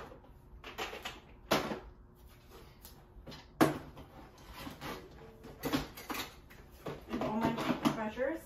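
Small items being put away in plastic storage drawers and boxes: a series of sharp knocks and clatters, the loudest about three and a half seconds in, with a brief murmur of a voice near the end.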